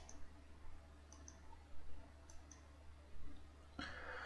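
Faint computer mouse clicks in quick pairs, three pairs about a second apart, over a steady low hum; a short louder rustle or breath comes near the end.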